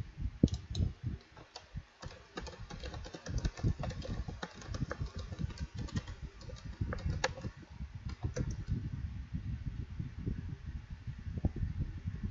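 Typing on a computer keyboard: an irregular run of quick key clicks and thumps.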